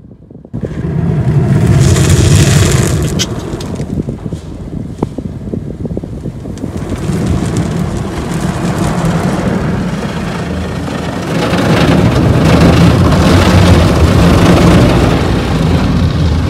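High-pressure water jets of an automatic car wash blasting against the car's windshield and body, heard from inside the cabin as a dense, intense rushing. It starts suddenly about half a second in, eases off around the middle, and builds up again near the end.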